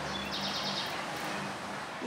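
Atlantic Forest ambience: a steady hiss of the forest with a short, rapid chirping trill of bird calls just after the start.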